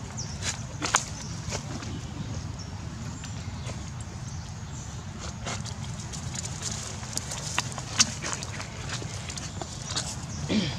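Outdoor background with a steady low rumble and scattered sharp clicks and rustles. The loudest clicks come about a second in and about eight seconds in.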